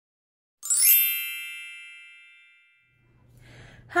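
A bright chime struck once about half a second in, ringing on and fading away over about two seconds. A low hum follows before a woman starts to speak.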